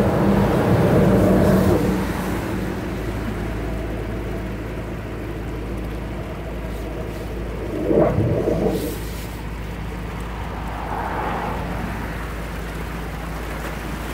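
Drain-jetting machine running steadily as its high-pressure hose jets a blocked road culvert pipe, with water rushing. A car passes at the start, and there is a brief louder burst about eight seconds in.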